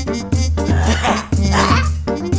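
Cartoon background music with a steady, repeating bass line, overlaid by two short, noisy, wordless vocal sounds from a cartoon character.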